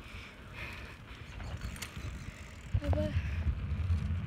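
Wind buffeting a handheld phone's microphone while riding a bicycle: a low rumble that grows louder about three seconds in.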